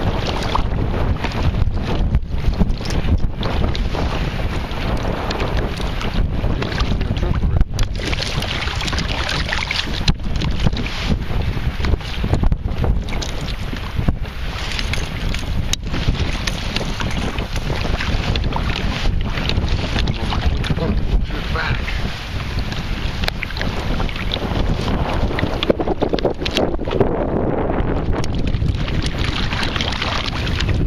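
Gusty wind buffeting the microphone, with choppy water lapping around a kayak.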